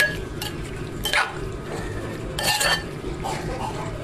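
A spoon stirring spaghetti noodles, meat and sauce in a baking dish, the spoon clinking and scraping against the dish in separate knocks, the loudest run about two and a half seconds in.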